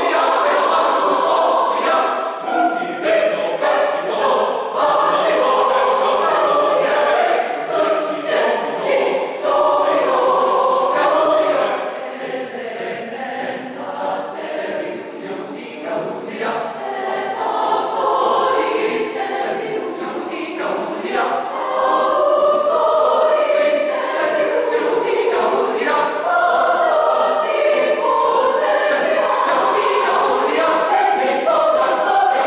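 Large mixed concert choir singing in full harmony. It sings softer for a stretch from about twelve seconds in, then swells back to full voice for the last several seconds.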